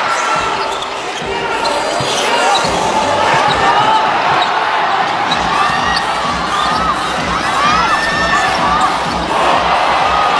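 A basketball being dribbled on a hardwood court over steady arena crowd noise, with the dribbling thuds coming regularly in the second half.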